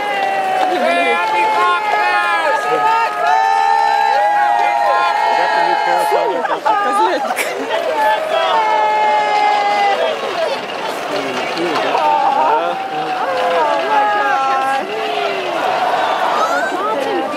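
A crowd of many people talking and calling out over one another, no single voice clear, with some long drawn-out calls in the middle.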